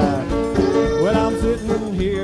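Live zydeco band (drums, bass, electric guitar, accordion, fiddle, piano, frottoir) playing an instrumental passage, a lead line with sliding notes over a steady drum beat, heard dry from the mixing-board feed.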